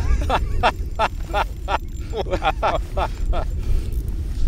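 A man laughing in short repeated bursts, over a steady low wind rumble on the microphone.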